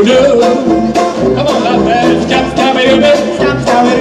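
A traditional jazz band playing live, with a banjo strumming under held melody notes.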